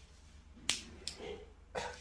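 Two short clicks: a sharp one about two-thirds of a second in and a fainter one shortly after.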